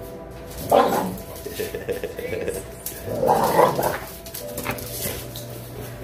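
A dog giving a short vocal outburst about a second in, amid dogs interacting.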